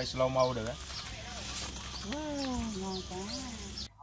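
Quiet voices talking in the background, with faint high chirps repeating a few times a second; the sound cuts off abruptly just before the end.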